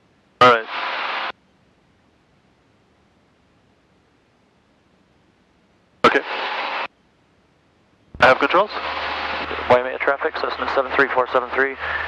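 Aircraft headset intercom and radio feed: two short bursts of hiss, about half a second and six seconds in, as the squelch opens and shuts, with dead silence between. From about eight seconds a radio transmission begins, with a low hum under the voice: another aircraft giving its position report.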